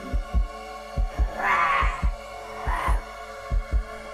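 Horror-score heartbeat sound effect: paired low lub-dub thumps just under a second apart over a sustained droning music pad. A breathy rasp swells and fades twice in the middle.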